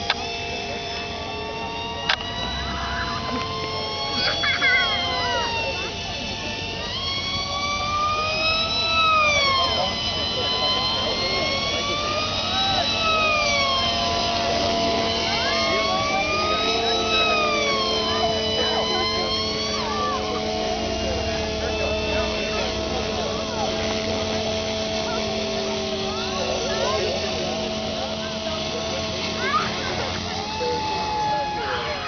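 Radio-controlled model airplane's motor and propeller whining overhead, the pitch swooping up and down every few seconds as it flies past, over a steadier lower drone.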